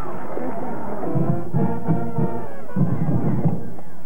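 A band playing: two short phrases of held notes over drum beats, the first starting about a second in and the second near three seconds in.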